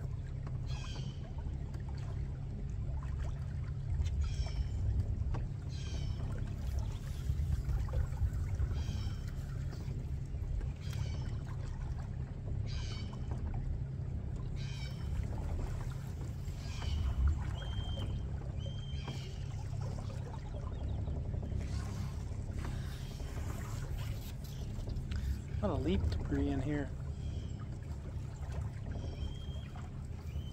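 Small aluminium boat moving under an electric trolling motor on calm water, with a steady low rumble of motor and water at the hull. Short high chirps recur every second or so, and a bird whistles briefly twice.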